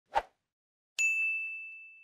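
A brief tap, then about a second in a single bright ding: a subscribe-button chime sound effect that rings on as one high tone, fading away over the following second.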